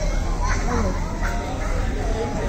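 A young child's wordless voice sounds, short rising and falling calls about half a second to a second and a half in, over a steady low hum.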